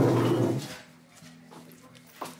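A person's short, loud laugh right at the start, followed by a soft, steady, low music underscore that comes in about a second later.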